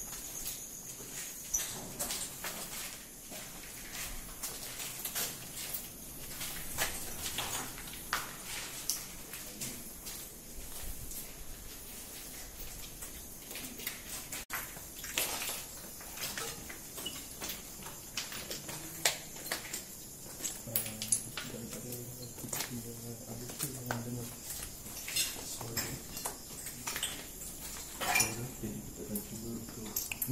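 Handling and footstep noise from people moving through an empty building: scattered light clicks and knocks, with faint low voices about twenty seconds in.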